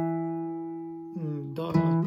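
A single note on a nylon-string classical guitar ringing and slowly fading, then a new note plucked near the end, played one at a time as a slow picado scale exercise.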